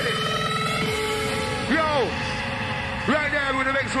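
Hard trance rave music as the beat breaks down: the kick drum drops out about a second in, leaving a held synth note, then two falling siren-like swoops. The MC begins to speak at the very end.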